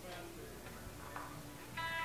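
Quiet stage noise with a few faint clicks, then near the end an electric guitar note rings out and holds as the band starts into a song.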